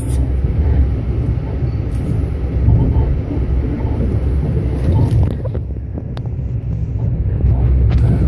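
A Lastochka (Siemens Desiro RUS) electric train running, heard from inside the carriage as a steady low rumble, with a few faint clicks around the middle.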